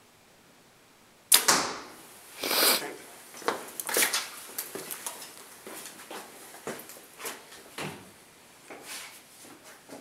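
A compound bow shot about a second in: a sharp snap from the string's release, the loudest sound here, followed a second later by a short rustling burst. After that come a run of lighter clicks and knocks from a bow and arrows being handled.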